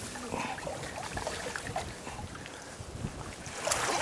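River water washing and lapping around a wading angler's legs and the drift boat, with some wind on the microphone. Near the end comes a brief splash as a hooked trout is grabbed by hand in the shallows.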